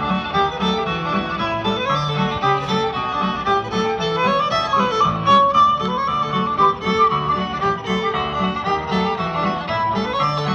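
Traditional Irish dance music: a fiddle melody over a guitar accompaniment, with a steady, lively beat.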